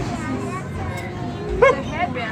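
Overlapping chatter of children and adults at a present opening, with one short, high-pitched rising excited cry about one and a half seconds in.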